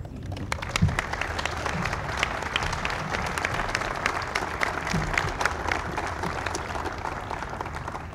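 An audience applauding, a steady mass of hand claps that eases off slightly near the end.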